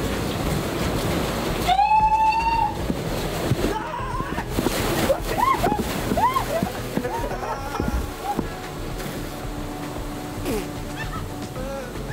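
Sea surf washing and splashing through a narrow rock passage on a beach, a steady rush of water. A short vocal cry comes about two seconds in, with a few brief voice sounds around the middle.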